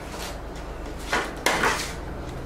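Paper wrappers and condiment packets rustling and clicking as they are handled in a cardboard takeout box, with a sharp click about a second and a half in, followed by a short rustle.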